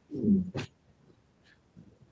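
A person's short, wordless 'hmm' of about half a second, ending in a soft click, as of a thinking pause before an answer.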